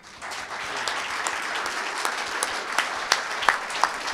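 Audience applauding. The clapping starts as soon as the speech ends, builds within about half a second, then holds steady.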